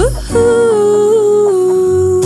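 Christmas pop song: a singer's voice slides up and then holds one long wordless note over the song's backing.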